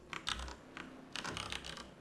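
Computer keyboard typing: a few keystrokes just after the start, then a quick run of keystrokes in the second half.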